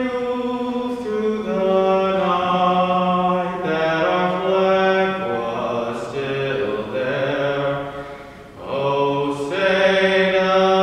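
A solo voice singing the national anthem in long held notes that step from pitch to pitch, with a brief pause for breath about eight and a half seconds in.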